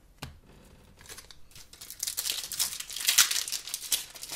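Foil wrapper of an Upper Deck hockey card pack crinkling and tearing as it is handled and ripped open, getting louder and denser over the last two seconds. A single short tap comes just after the start.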